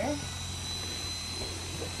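Electric horse clippers running steadily, with a thin high whine over a low hum.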